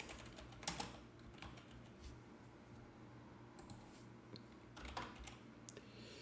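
Faint, sparse computer keyboard keystrokes: a scattered handful of taps at irregular intervals over a low steady hum.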